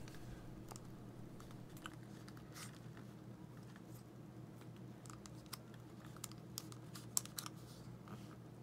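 Faint small clicks and handling sounds of a plastic Nissan smart key fob as its metal emergency key is slid out, with the clicks coming more often in the second half and the sharpest about seven seconds in.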